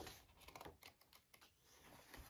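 Near silence, with a few faint light ticks of hands handling the paper pages of an open hardback book.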